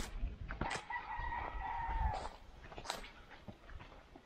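A rooster crowing once, starting about a second in: one long held call that dips at the end. Footsteps and rustling on a dirt path run underneath.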